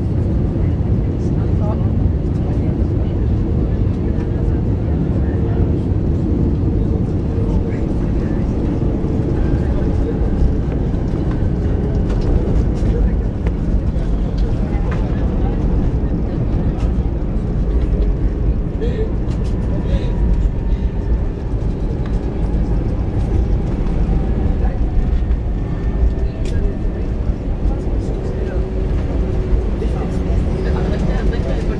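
Jet airliner cabin noise heard from a seat over the wing through touchdown and landing rollout: a loud, steady low rumble of the engines and the wheels on the runway, while the spoilers are raised and the aircraft slows. A faint whine falls slowly in pitch in the second half.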